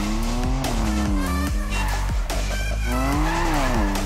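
Sports-car engine sound effect revving, its pitch sliding down and back up twice, over intro music with a heavy bass beat.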